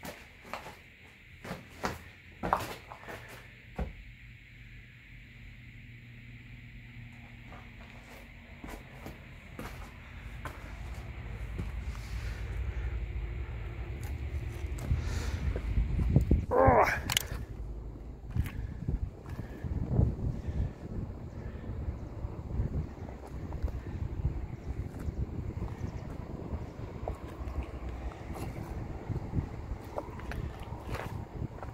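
Footsteps on rubble and debris, with several sharp knocks and clicks in the first few seconds, then walking outdoors with wind rumbling on the microphone. About sixteen seconds in, a short, loud sound sweeps upward in pitch.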